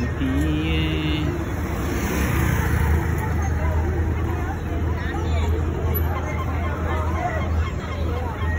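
Crowd babble in a busy public square, with a steady low hum of traffic running underneath.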